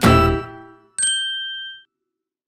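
Intro jingle: a last musical note fades out, then a single bright chime dings about a second in and rings out in under a second.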